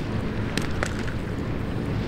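Steady low outdoor rumble with a couple of faint clicks about half a second and just under a second in.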